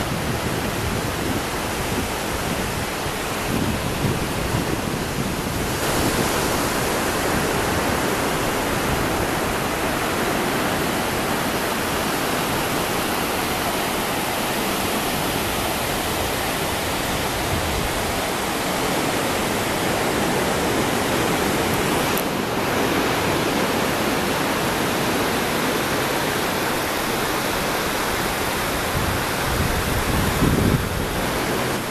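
Ocean surf breaking and washing up a sandy beach, a steady rushing noise that grows a little louder about six seconds in.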